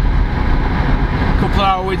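Steady low rumble of a car's engine and tyres heard from inside the cabin while driving. A man's voice comes back near the end.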